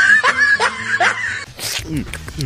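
High-pitched laughter in several short bursts, roughly two or three a second, then a brief burst of hiss about one and a half seconds in.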